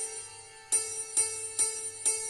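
Electronic keyboard playing a santoor (hammered dulcimer) voice: single melody notes picked out one at a time, each a bright metallic ping that rings and fades. A note rings out, then from just under a second in, notes follow about every half second.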